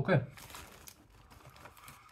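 Rapid crunching and crackling from a mouthful of baked puffed corn snacks being chewed, with the plastic crisp bag rustling as a hand reaches into it. The clicks are thickest in the first second, then grow sparser.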